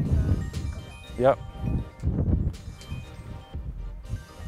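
Faint background music of light chiming tones over a low rumble, with a single spoken "yep" about a second in.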